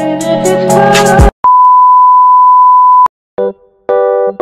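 Background music with a beat stops about a second in and is replaced by a loud, steady electronic beep on one pitch, lasting under two seconds and cutting off sharply. Near the end, a few short electric-piano notes begin.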